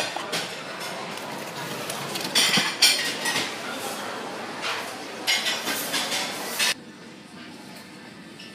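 Clinking and rustling of plastic trays, a bottle and packaging being handled, over a steady background of room noise, with louder clattery patches a couple of seconds in and again later; the sound drops abruptly near the end.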